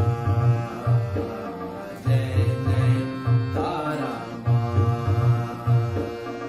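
Harmonium playing a bhajan melody over a steady tabla rhythm. The drum pattern repeats about every two and a half seconds.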